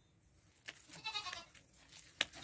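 A faint, wavering bleat of a farm animal a little under a second in, with a few light clicks around it.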